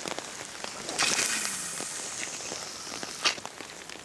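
Fly line hissing as it is ripped off the water and swished through the air in a long fly cast: a sudden high hiss about a second in that fades over about two seconds, with a short click near the end.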